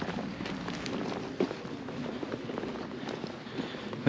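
Footsteps of two walkers on a wet tarmac lane, an irregular run of soft steps over faint outdoor background noise.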